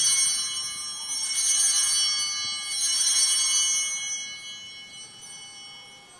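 Altar bells rung three times, about a second and a half apart, with a bright high jingling ring that fades after each shake and dies away after the third. This marks the elevation of the chalice at the consecration.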